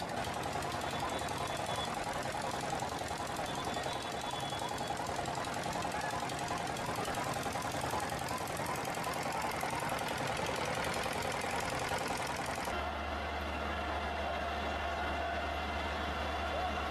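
Engine running with a rapid, even knocking, under a crowd's voices. Near the end the sound changes abruptly to a steady low hum.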